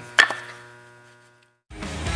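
A steady electric hum fades away, with one sharp knock just after the start. After a brief dead silence, loud rock music starts near the end.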